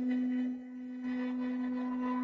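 A steady humming tone with a stack of overtones, leaking through an unmuted participant's microphone on a video call. Its level drops about half a second in and then holds steady.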